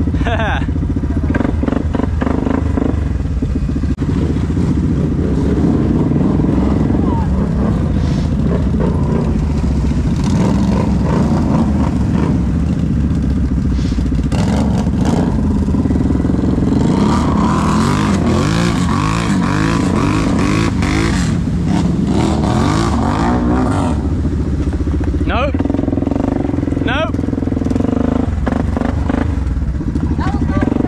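ATV engines running close by, idling and revving, the pitch rising and falling repeatedly in the middle stretch as the quads pull away through the mud.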